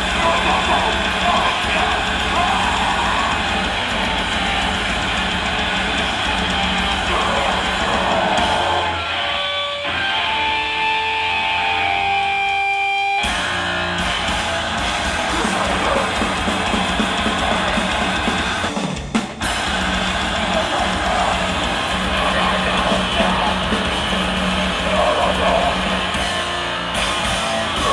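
Live metal band playing loud and dense: distorted electric guitar, drum kit and vocals. About nine seconds in the band drops away to a few held, ringing guitar tones, then crashes back in full about four seconds later, with a brief break a little before the twenty-second mark.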